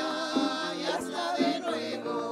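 A small choir of women's voices singing a hymn, their pitch wavering with vibrato, accompanied by an electronic keyboard.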